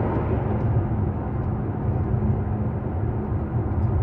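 Steady low rumble of a running vehicle, with a faint constant hum.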